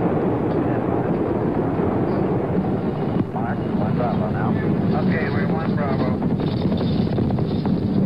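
Saturn V's five F-1 first-stage engines heard from the ground during the climb, a loud, steady low rumble. Faint voices come through it about halfway in.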